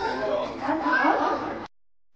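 A high voice with wavering pitch that cuts off suddenly near the end, leaving faint room tone.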